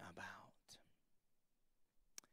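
A man's softly spoken last word trailing off, then near silence: room tone.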